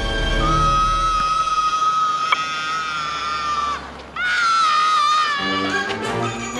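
A child screaming: one long held scream, then after a brief break a second, wavering scream, over film-score music.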